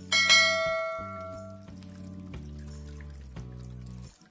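A single bright bell chime, the notification-bell sound effect of an animated subscribe button, rings out just after a click and fades over about a second and a half, over soft background music holding low sustained chords.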